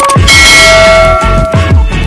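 Subscribe-button animation sound effect: a bright bell-like chime rings out over electronic music, with deep bass tones sliding down in pitch several times.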